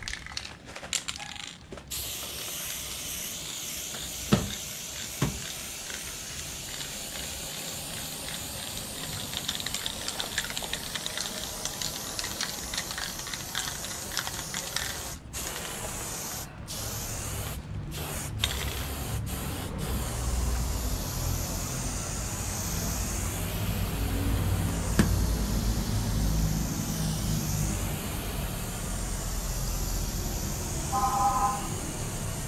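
Aerosol can of chrome (silver) spray paint hissing in long continuous bursts as letters are filled, cut by several short breaks about halfway through where the nozzle is let go. Two sharp clicks come a few seconds in, and a low rumble joins in the second half.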